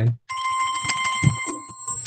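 Telephone ringing: a steady, high ring that starts a moment in and fades toward the end.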